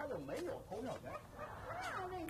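A man singing a tune to himself without clear words, his voice gliding up and down.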